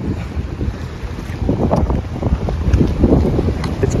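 Wind buffeting a phone's microphone in gusts, a rumbling that swells about a second and a half in.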